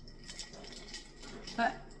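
Faint clinks of ice cubes against a drinking glass as it is held and tilted, a few small ticks through the pause, followed by a single spoken word near the end.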